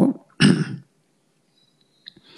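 A man clearing his throat once, a short rasp about half a second in.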